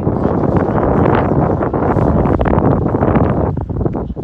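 Wind buffeting the microphone: a loud, steady rumble that eases off near the end.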